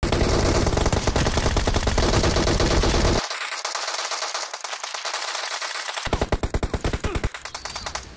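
Rapid automatic gunfire from the mobile game PUBG played on a phone, starting abruptly and running in long fast bursts.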